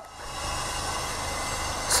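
Road-works machinery running steadily: a continuous noisy hiss with a faint low hum beneath, with no strokes or rhythm.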